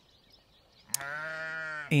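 One long sheep bleat, about a second long, beginning just after a short click about a second in.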